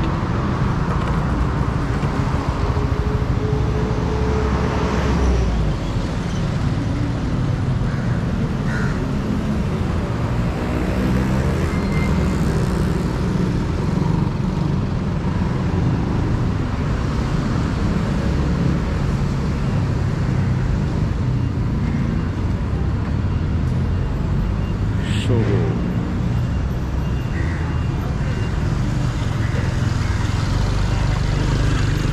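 Steady city street traffic: cars and motorbikes running along the road beside a pavement, with a brief sharper sound about 25 seconds in.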